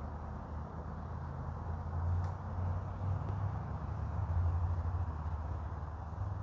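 Steady low background rumble with no distinct events, swelling slightly about two seconds in and again a little past the middle.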